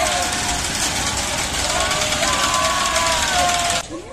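Pirate-ship swing ride running with riders aboard: a loud, steady rushing noise with drawn-out shouts from the riders rising and falling over it. It cuts off suddenly just before the end.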